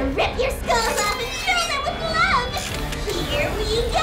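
High-pitched voice sounds rising and falling in pitch, short and overlapping, over a background music score.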